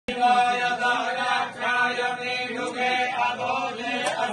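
Hindu puja mantras chanted by a voice in a steady, sing-song recitation, held notes broken by short pauses.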